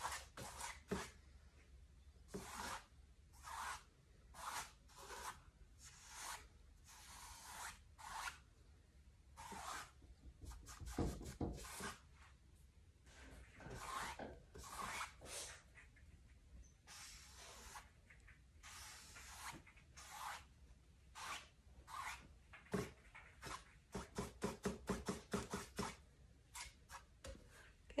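Large blending brush rubbing acrylic paint over a canvas in circular strokes: a faint scrubbing swish with each stroke, about one a second, coming faster near the end.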